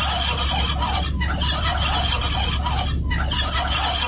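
Recorded turkeys gobbling, the played-in cue for a radio call-in contest, in several bursts with short breaks about a second and three seconds in, over a steady low hum.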